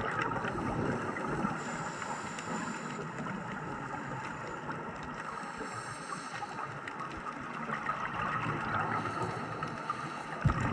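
Steady, muffled underwater noise picked up through a camera's waterproof housing, with a faint high whine that comes and goes in the first half.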